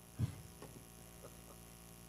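Steady low electrical mains hum from the sound system, with one dull thump about a quarter second in and a few faint knocks after it.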